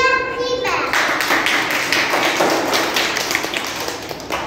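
A child's voice ends just under a second in, and an audience then claps for about three seconds.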